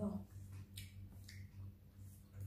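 Faint eating sounds at a table: two short sharp clicks about half a second apart, from mouth smacks or a spoon against a plate, the second with a brief ring. Underneath is a low hum that pulses about three times a second.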